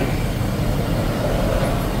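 Steady low rumble of outdoor city background noise.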